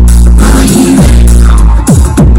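Loud dance music with a heavy bass line played over a sound system, with a swooping fall in pitch near the end.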